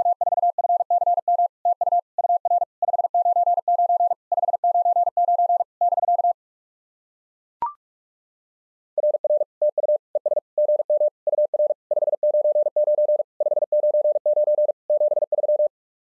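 Morse code at 45 words per minute, sent as a keyed sine-wave sidetone. The first run, repeating the activator's 'WA4FCM TU UR 599 599 BK', stops about six seconds in. A short courtesy beep follows, then the chaser's Morse reply begins at a slightly lower pitch and keys on for about seven seconds.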